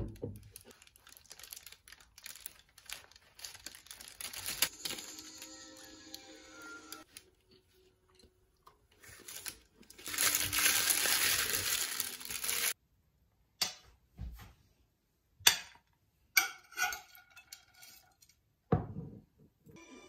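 A paper bakery bag crinkling as it is handled at a table, loudest for a couple of seconds near the middle, with scattered clicks and light clinks of dishes.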